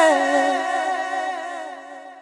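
A male voice holding a long final vocal note with a wavering vibrato, unaccompanied. It slides down slightly into the note at the start, then dies away steadily as the song ends.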